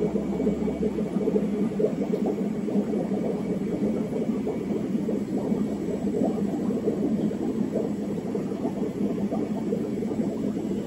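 Steady whirring hum of aquarium equipment, air pumps and filters, running without a break.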